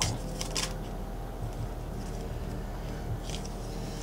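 Tarot cards being handled as a card is drawn from the deck: a few brief scratchy slides and flicks of card stock near the start and again about three seconds in.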